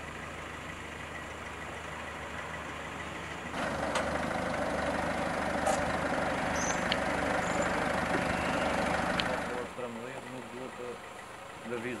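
Street noise with a car engine running, louder for a stretch from about three and a half seconds in until near ten seconds, with a few faint clicks. A person's voice follows near the end.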